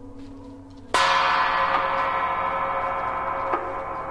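A loud, bell-like metallic stroke sounds about a second in and rings on, slowly fading, over quietly held tones. A lighter stroke comes near the end.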